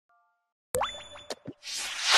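Logo-intro sound effects: a sudden pop with a quick upward pitch glide and ringing tones about three quarters of a second in, two short knocks, then a whoosh that swells toward the end.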